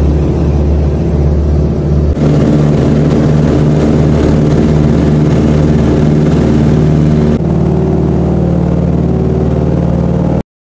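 Beech 18's twin radial engines heard from inside the cabin, running loud and steady with a deep, even pulse. About two seconds in the sound steps up louder and brighter, and it shifts again near the end.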